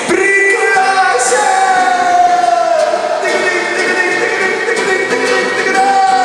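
Live acoustic band music: two acoustic guitars strummed and picked, with a long held melody note near the start that slides slowly downward, and another held note rising in near the end.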